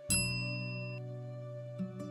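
A bright notification-style ding rings out just after the start and fades within about a second, over soft background music with sustained chords; another musical note comes in near the end.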